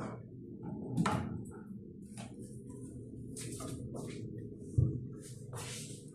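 A cabinet drawer being handled and slid, with a knock about a second in and a sharp thud near the end as it is pushed shut.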